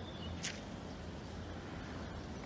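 Quiet outdoor ambience: a steady low rumble with one brief high hiss about half a second in.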